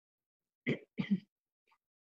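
A woman clearing her throat: two short rasps in quick succession, about a second in.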